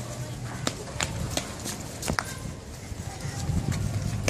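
Footsteps of several people walking on a brick pavement: irregular sharp slaps and clicks of shoes and sandals.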